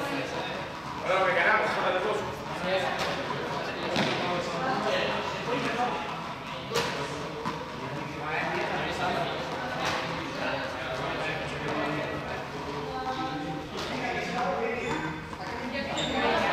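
Indistinct chatter of several voices echoing in a large sports hall, with a few sharp knocks now and then.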